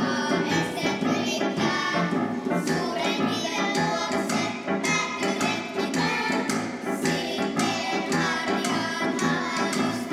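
A group of young children singing a song together, with instrumental accompaniment keeping a steady beat.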